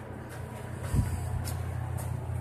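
A steady low hum inside an elevator car standing with its doors open, with a single dull thump about a second in.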